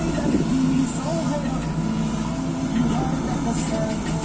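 JCB backhoe loader's diesel engine running steadily under load as the backhoe arm works.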